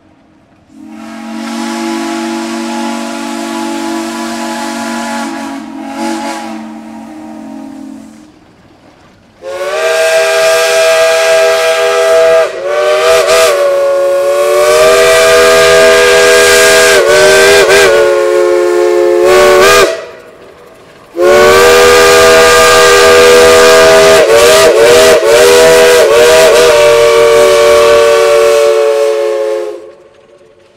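Steam locomotive whistles blowing three long blasts. The first, about seven seconds long, is lower and softer. Then come two much louder blasts of several notes at once, about ten and eight seconds long, their notes bending in pitch in places.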